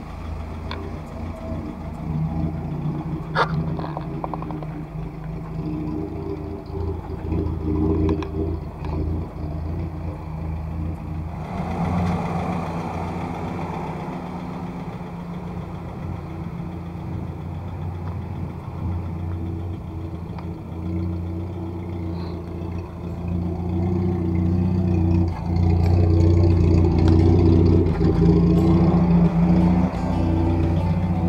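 Willys Jeepster's L-134 "Go Devil" four-cylinder engine idling steadily, louder in the last few seconds.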